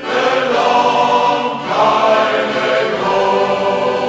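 Shanty choir singing the closing refrain in full harmony: three long held chords, one after another.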